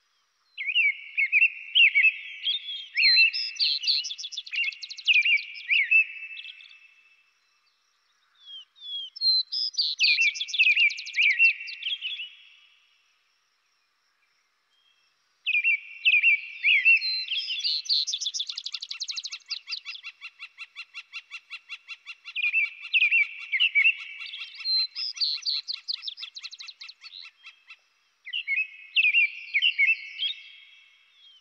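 American robin and vesper sparrow singing: phrased songs in bouts of several seconds separated by short silences. In the second half the songs overlap, with a long rapid trill running beneath them.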